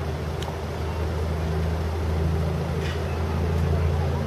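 A vehicle engine running steadily close by, a low even hum that holds one pitch.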